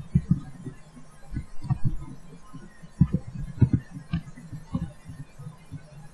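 Muffled computer keyboard and mouse clicks, heard as irregular low thuds a few times a second, over a steady low hum.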